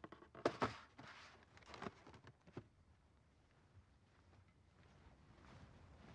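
Faint room tone with a few soft taps and knocks in the first couple of seconds, then near quiet.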